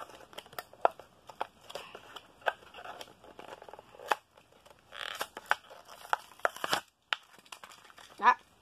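A Hot Wheels blister pack being opened by hand: plastic and cardboard crinkling and tearing, with many sharp, irregular clicks and snaps.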